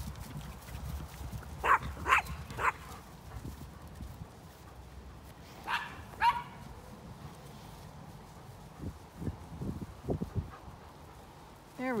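Small dogs barking in short yaps: three close together about two seconds in, then two more a few seconds later. Near the end come a few dull thuds, like hoofbeats on turf.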